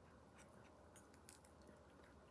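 Faint crisp crackles of pizza crust being bitten and chewed: a small snap about half a second in and a short cluster just past the middle.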